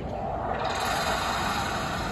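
Outdoor street ambience: a steady hiss and low rumble like passing traffic, swelling a little about half a second in.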